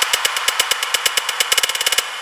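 Techno track: a rapid roll of percussive hits over a hissing noise band, with no kick drum or bass. The roll speeds up toward the end.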